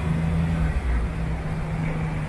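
City street traffic: a nearby motor vehicle's engine runs with a steady low hum over the rumble of road noise.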